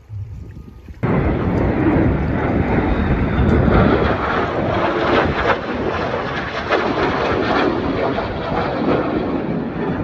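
Aircraft flying overhead: a loud, steady rushing noise that starts abruptly about a second in.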